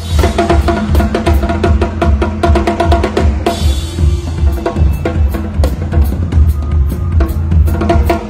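Live rock drum solo on a full drum kit played with the snare wires switched off, so the drums ring open and tom-like: fast, dense strokes over a steady bass-drum pulse, with a cymbal crash about three and a half seconds in.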